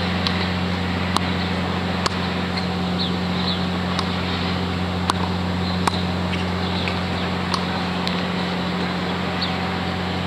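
Tennis balls being struck and bouncing on a hard court: sharp pops about seven times at irregular intervals, over a steady low hum, with a few bird chirps.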